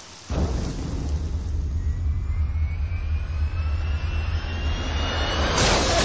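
Jet airliner's engines passing low: a deep rumble sets in just after the start, with a whine that climbs steadily in pitch, and a louder rushing noise near the end.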